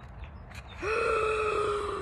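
A woman's voice holding one high, steady 'oooh' for a little over a second, starting just under a second in, a drawn-out exclamation of amazement.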